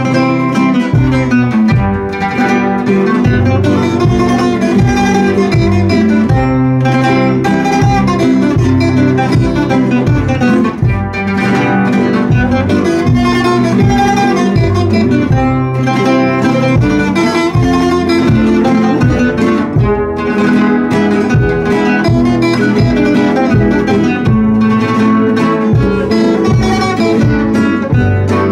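Two acoustic guitars played together in a steady rhythm, strummed and plucked, with no singing.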